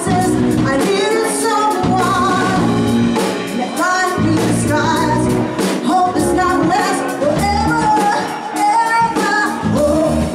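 A woman singing lead over a live band of keyboards, electric bass and drum kit playing an R&B/funk cover, with a steady drum beat.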